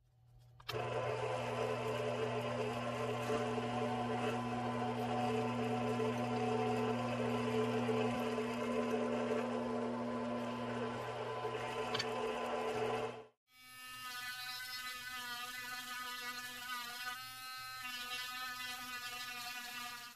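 Benchtop drill press motor running with a steady hum while drilling eye sockets into a carved wooden lure body. After a sudden cut about two-thirds of the way through, a different, quieter motor run follows, with a slightly wavering whine.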